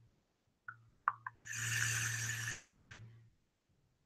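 A drag on a vape: a few small clicks, then an airy hiss lasting about a second as air is drawn through the tank's airflow while the coil fires.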